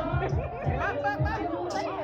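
Backing-track music with a low drum beat, under several voices talking and chattering at once.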